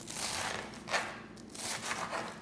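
Kitchen knife chopping a bunch of spinach stems on a cutting board: about three crisp cuts through the crunchy stems.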